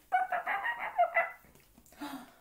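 A woman's voice imitating a dog yelping as it runs off: a quick string of short, high yelps lasting about a second.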